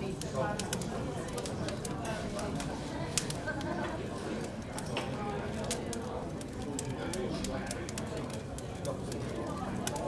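Indistinct murmur of voices in a room, with frequent irregular sharp crackles and pops from a burning wood fire.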